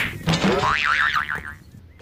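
A cartoon-style 'boing' comedy sound effect: a wobbling, springy tone that swings rapidly up and down in pitch and dies away after about a second and a half.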